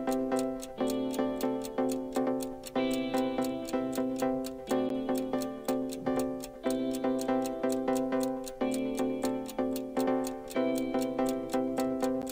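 Countdown-timer music: sustained chords changing about every two seconds over a steady clock tick, about four ticks a second, marking the time left to answer.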